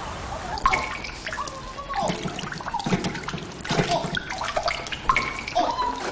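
Water dripping and splashing into water: irregular drips and small plinks, starting about half a second in.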